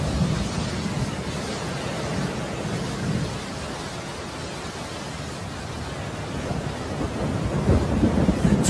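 Thunderstorm: steady rain hiss under low rolling thunder, the rumble strongest in the first few seconds and easing through the middle. Music begins near the end.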